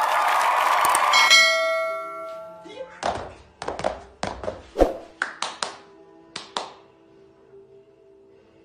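A ringing chime that fades out over the first two seconds. It is followed by a run of about a dozen irregular knocks: footsteps on a wooden floor.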